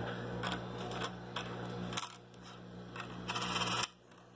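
Pennies clicking and clinking against each other and the wooden tabletop as they are slid apart and flipped over by hand: a string of light irregular clicks, thickening into a short clatter near the end. A low steady hum underneath stops about halfway through.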